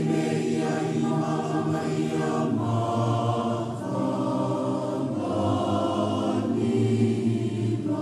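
A choir singing a hymn in long held chords that change every second or so.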